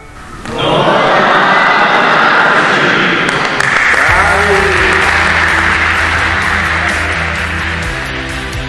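A group applauding and cheering over background music. A steady, bass-heavy music part comes in about halfway through.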